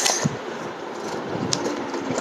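Handling noise from a clear plastic waterproof action-camera housing being pressed shut: a steady rustling hiss with a sharp click at the start and another about a second and a half in.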